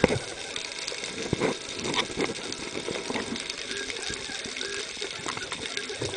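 Underwater crackling and ticking, with a few louder knocks scattered through, heard through a camera housing below the surface beside a speared musselcracker on the spear shaft.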